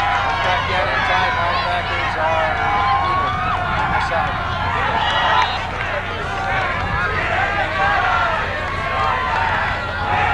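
Football crowd shouting and cheering, many voices overlapping, over a steady low hum.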